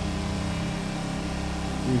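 A small engine running steadily, a constant low hum that does not change.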